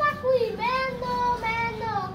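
A young boy singing unaccompanied, holding long drawn-out notes that slide gently from one pitch to the next.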